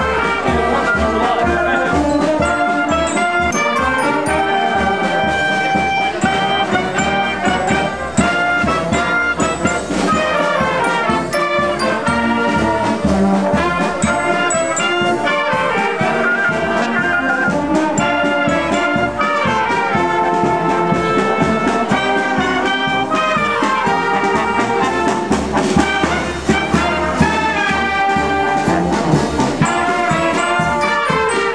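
Marching band of flutes and brass with sousaphones playing a tune in full while parading, with a steady beat underneath.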